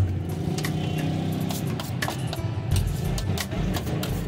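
Steel spoon and knife clicking and scraping on a flat steel tray as sauce and salad are worked, over a steady low background hum.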